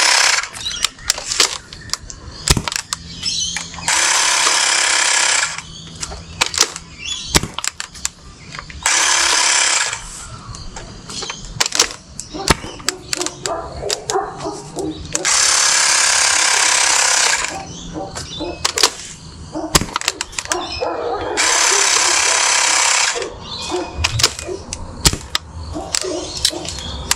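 Xiaomi Mi portable mini air compressor running in five bursts of about one and a half to two seconds each, topping the blaster's air back up to 10 psi and cutting off by itself at the set pressure. Between the bursts come sharp clicks and pops of the Nerf blaster being loaded and fired.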